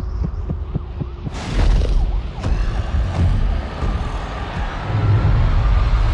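Film-trailer sound design: a deep rumbling drone under a fast, heartbeat-like throbbing pulse, broken by a heavy booming hit about a second and a half in, then building again.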